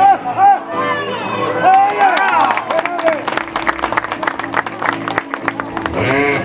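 A voice and music, with crowd noise behind them. From about halfway through, a fast, uneven run of sharp clicks joins in.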